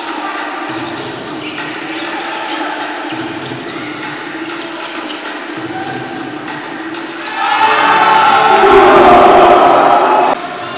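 Basketball arena game sound: a steady background din of the hall, then about seven and a half seconds in the crowd breaks into loud cheering after a shot at the basket, lasting a couple of seconds and cut off abruptly.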